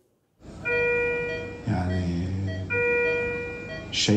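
Electronic alarm tone from hospital equipment, sounding on and off about a second at a time, with a low man's voice briefly in the gap.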